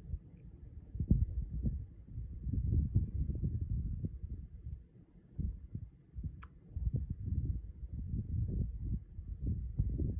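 Irregular low rumbling and thumping on the phone's microphone, with one faint click about six and a half seconds in.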